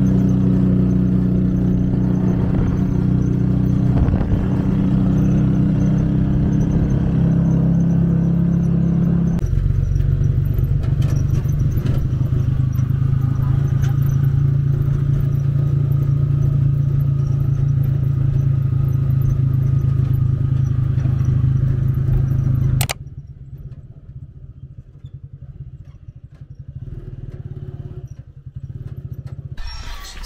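Small motorcycle engine of a motor tricycle running steadily under way, heard from inside the passenger cab. Its pitch drops a step about a third of the way in, and the engine sound cuts off abruptly about three-quarters through, leaving a much quieter outdoor background.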